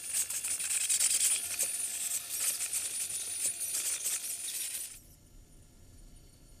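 A hissing, crackling noise, strongest in the high range, that cuts off suddenly about five seconds in.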